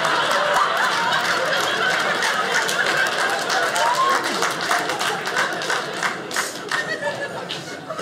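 Audience laughing after a punchline, with scattered clapping that thickens in the second half and dies away near the end.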